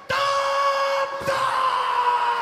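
A person's long, high-pitched yell held on one note, starting suddenly and sagging slowly in pitch.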